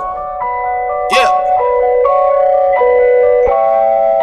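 Electronic music: a bell-like, mallet-toned synth melody of held notes stepping between pitches, with a brief vocal snippet about a second in.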